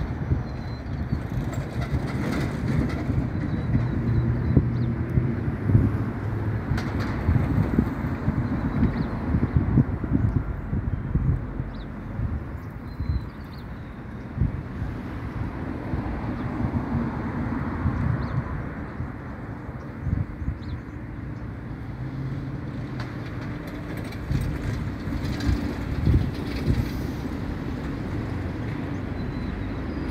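Low, uneven outdoor rumble of vehicle noise, with wind buffeting the microphone, a little louder in the first half.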